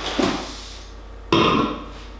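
A drinks can is set down on the kitchen counter with a short rustle and knock. About a second and a half in comes a short burp.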